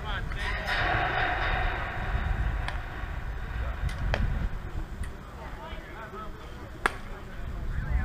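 Wind rumbling on an action-camera microphone, with faint distant voices of players talking. There are a few light clicks, and one sharp knock about seven seconds in.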